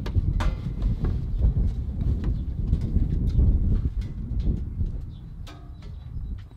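Gusty wind buffeting the microphone: a loud, uneven low rumble that dies down about four and a half seconds in, with a few light knocks on top.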